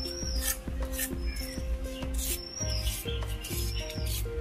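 Background music with a steady beat, over repeated rasping scrapes of a hand trowel being worked over wet cement.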